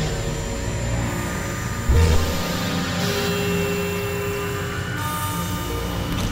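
Experimental electronic synthesizer drones: several steady held tones layered over a hiss of noise, with a short low thud just under two seconds in and a held middle tone from about three to five seconds in.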